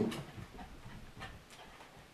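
A few faint, irregular taps and knocks from a small dog in a plastic cone collar jumping up at a window after a fly.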